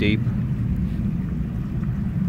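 Low, steady rush of the Gila River running swift and deep, swollen after rain upstream, with wind rumbling on the microphone.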